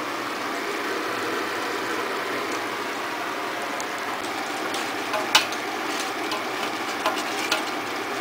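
Dal sizzling steadily in hot oil in a stainless steel pot, with a few sharp clicks of a spoon against the pot about halfway through and again near the end.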